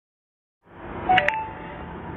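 Background hiss fades in, then about a second in come two quick clicks with short electronic beeps, the second tone lingering faintly.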